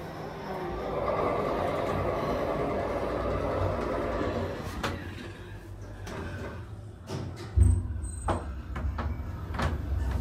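Passenger lift travelling between floors: a steady whir and low rumble that fades partway through. Near the end comes a loud thump, with several sharp clicks around it.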